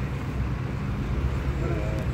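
Steady low rumble of street traffic, with people talking faintly near the end.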